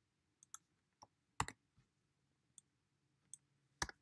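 Computer keyboard keys being typed: about nine short, irregular clicks, the loudest about a second and a half in and just before the end.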